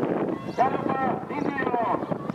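A race commentator's voice, speaking fast, calling a harness race.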